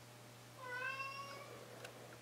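A tabby cat gives a soft meow about half a second in, lasting about a second and rising slightly in pitch. There is a faint click near the end.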